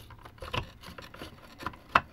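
A wooden brush roll being pushed down into the plastic nozzle housing of a Dirt Devil hand-held vacuum: wood and plastic rubbing and scraping, with a few small knocks and a sharp click near the end.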